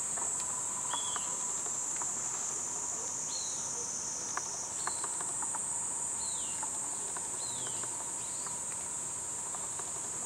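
A steady, high-pitched drone of summer insects, with short high chirps repeating about once a second.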